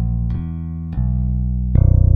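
Capurso FAT 5 Deluxe five-string electric bass played solo: a short run of plucked notes, with a louder low note struck near the end and left ringing.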